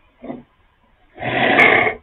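A short breathy sound, then a louder breath of close to a second into a close microphone.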